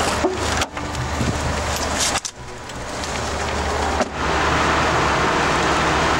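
Car engine running: a low steady hum under a hiss of noise. The sound dips briefly twice and gets louder from about four seconds in.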